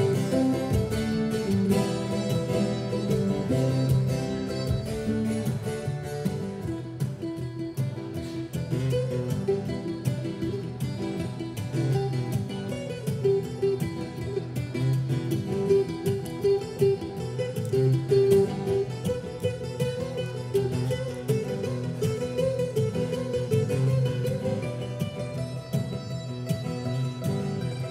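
Acoustic guitar and mandolin playing an instrumental passage together, a steady run of quickly picked and strummed notes.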